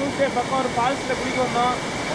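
A waterfall's steady rushing water, with people's voices calling out in short shouts over it.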